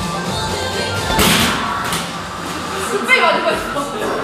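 A single punch landing on the punching bag of an arcade boxing machine: one sharp thump about a second in.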